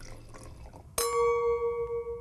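Sound effect of liquid pouring, then about a second in a single glass chime struck once and ringing out with a long decay.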